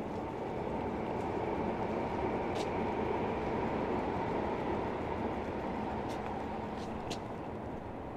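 A vehicle passing nearby: a broad low rumble that swells to a peak around the middle and then fades, with a few faint clicks.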